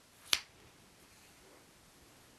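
A single short, sharp click about a third of a second in, against a quiet room.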